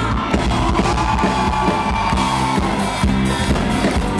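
Live rock band playing loud, with drums and electric guitar. A long held note falls slightly in pitch over the first half and a little more.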